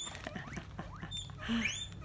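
Guinea pigs wheeking: a run of high squeals, each rising in pitch, several within two seconds. It is the excited call of guinea pigs expecting food, here green beans being brought to them.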